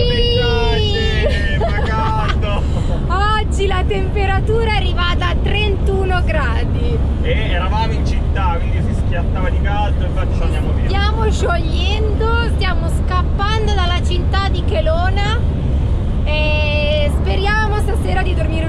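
Steady low rumble of a camper van driving on the road, heard from inside the cab under a woman's talking and laughter.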